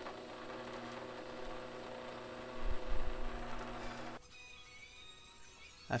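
Drill press motor running with a steady hum as the bit bores into a wooden panel, with a few low thumps near the middle. The hum cuts off suddenly about four seconds in, leaving a much quieter background.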